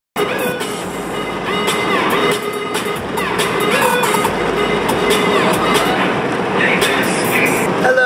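Wind and road noise rushing loudly and steadily through a moving car's cabin.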